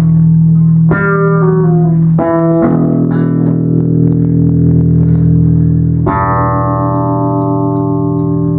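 Music: plucked string notes over a steady low drone, with a louder chord struck about six seconds in and left ringing.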